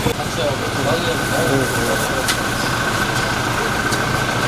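Outdoor field sound: people talking indistinctly in the background over a steady rumbling noise, with a thin steady whine running through it.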